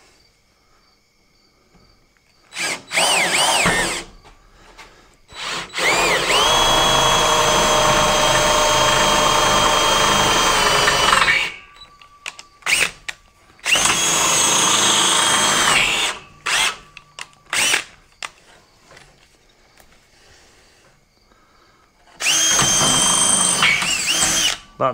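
An old cordless drill run in bursts while drilling into the rack: two short spin-ups, then a steady run of about six seconds, a shorter run, a few quick blips, and another run near the end. The drill's chuck is worn.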